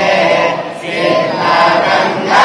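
A group of boys chanting a prayer together in unison, with a short dip between phrases a little under a second in.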